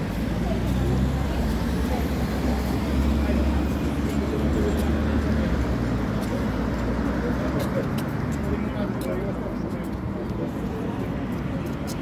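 Noisy city street: a group of people talking indistinctly over road traffic, with a heavy low rumble for the first few seconds. It is very noisy, too noisy to make out what language the voices speak.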